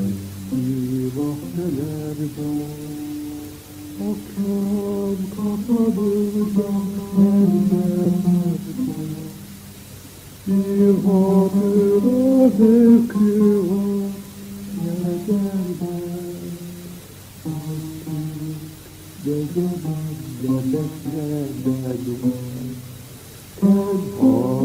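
A man singing a slow Turkish classical song, accompanying himself on the oud, in phrases with short breaks between them.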